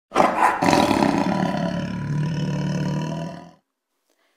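A lion roar: one long roar that dies away near the end.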